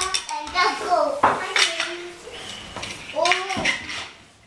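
A toddler babbling and calling out, mixed with light clattering clicks and knocks.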